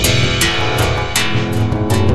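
Electronic music made in the Jeskola Buzz software synthesizer: synth tones over a heavy bass, with sharp percussive hits at a steady beat of about two to three a second.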